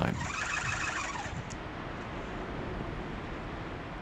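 A steady rushing background noise with no clear source. There is a faint pitched sound in the first second, and a brief click about one and a half seconds in.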